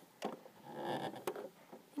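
Faint handling noise of fingers holding thread at a sewing machine needle: a small click, a soft rustle, then another small click.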